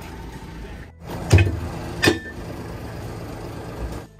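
Blower pipe fittings being stowed in a truck's metal side locker: a heavy clunk about a second in, then a sharper metallic knock with a brief ring a second later, over a steady low rumble.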